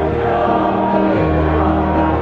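Mixed choir of women's and men's voices singing long held chords, the lower notes moving to a new pitch about a second in.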